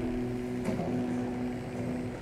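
Soft sustained keyboard chords played under the service: a few notes held steadily, with a higher note entering just under a second in.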